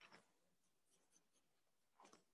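Faint pen strokes scratching on paper during a timed drawing, a few short scrapes near the start and a few light ticks in between.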